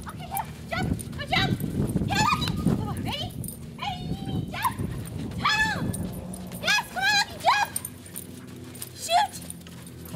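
Dog barking excitedly in a long run of short, high-pitched barks in quick clusters, thinning out after about seven seconds with one last bark near the end.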